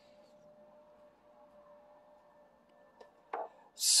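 Quiet room tone with a faint steady hum. A tiny click about three seconds in, a short mouth or breath sound just after, then a man's voice starting "So" at the very end.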